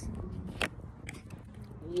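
A deck of tarot cards being shuffled by hand, giving a few sharp card snaps and clicks, the clearest about half a second in. Underneath is a low steady rumble of wind on the microphone.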